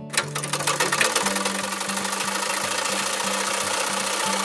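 Old black sewing machine running at speed: a fast, even run of needle ticks.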